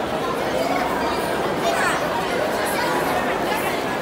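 Crowd chatter: many voices talking at once in a steady hubbub, with no single voice standing out.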